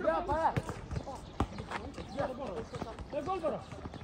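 Several men shouting and calling out to each other during a football game, their calls overlapping. There are a few sharp thuds of the ball being kicked and bouncing on the hard court.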